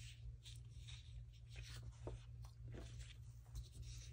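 Faint rustling and sliding of printed paper sheets being handled and swapped on a cutting mat: several short scratchy strokes, over a steady low hum.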